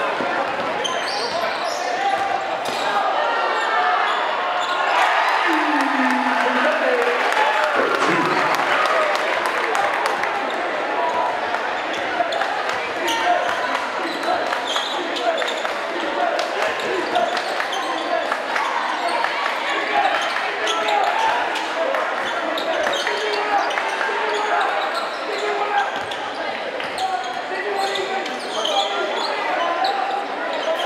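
Crowd voices chattering in a gym, with a few louder shouts, while a basketball is dribbled on the hardwood court with short, sharp bounces throughout.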